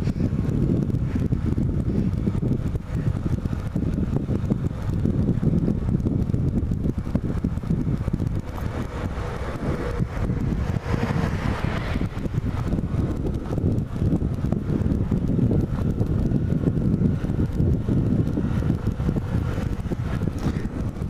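Wind buffeting the camera microphone on a moving motorcycle, with the Bajaj Platino 100's small single-cylinder four-stroke engine running steadily underneath as it rolls downhill. About halfway through, a louder, hissier stretch comes as an oncoming bus passes.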